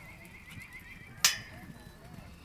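A horse whinnying in one long quavering call that fades out a little over a second in, over the dull hoofbeats of a horse cantering on an arena's dirt footing. About a second in there is a single sharp knock, the loudest sound.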